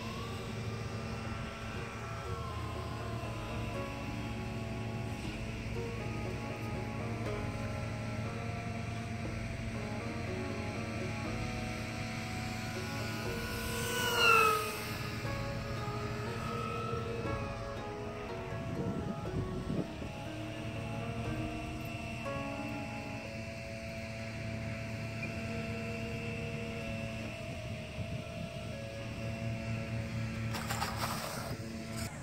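Background music, with the whine of a small RC plane's twin Emax 2205 brushless motors passing close about fourteen seconds in, the pitch falling as it goes by.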